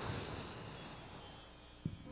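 Wind chimes ringing softly: a shimmer of many high, thin tones that slowly fade, with a brief soft rush of noise at the start.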